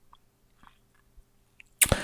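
A man's faint mouth clicks and lip smacks during a pause in speech, with a louder, sharper mouth sound near the end as he gets ready to speak again, over a faint steady room hum.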